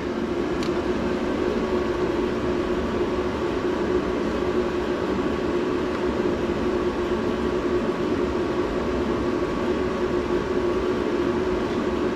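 Steady drone of running machinery with a constant hum, unchanging throughout.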